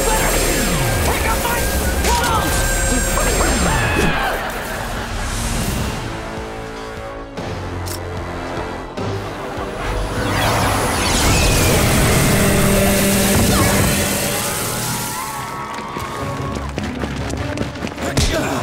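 TV sitcom action soundtrack: music under shouts and sound effects, including an electric zap and two falling swooshes in the first four seconds. A louder swell of noise builds about ten seconds in.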